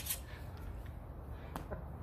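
Backsword fencing contact: the tail of a sharp blade clash at the very start, then a single sharp click about one and a half seconds in, over a low steady hum.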